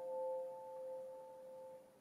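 A held chord on an electronic keyboard dying away, its tones fading out shortly before the end.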